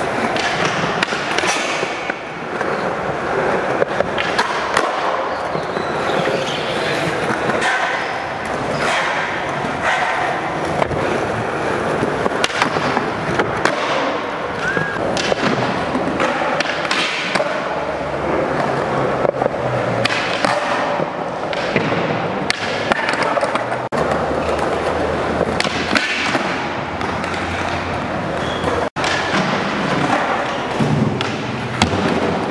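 Skateboard wheels rolling on a smooth concrete floor, broken again and again by sharp clacks of the board's tail popping and landing.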